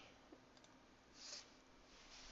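Near silence: room tone with a few faint clicks and one brief, soft high hiss a little past the middle.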